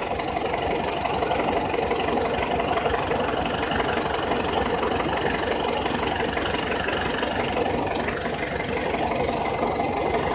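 Tractor engine running steadily while it pulls a box blade through clay soil.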